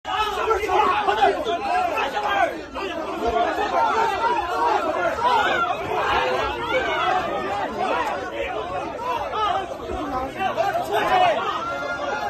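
A dense crowd of people all talking at once, many voices overlapping without a break.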